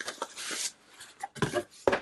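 Cardboard packaging and a foam insert scraping and rustling under hands for about the first half second, followed by a few light knocks as the box is handled.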